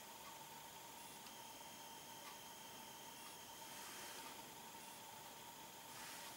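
Near silence: a faint, steady hiss of room tone with a faint steady high hum.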